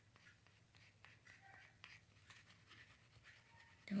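Faint small taps and rustles of a plastic squeeze glue bottle's nozzle being drawn along paper, with the paper shifting under the hand.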